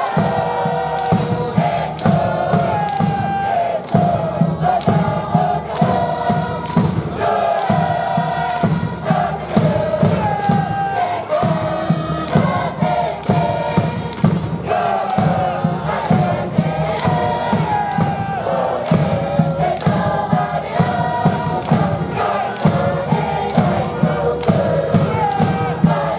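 A university cheer squad's cheer song: a band plays the melody over a steady bass-drum beat, with massed voices singing along.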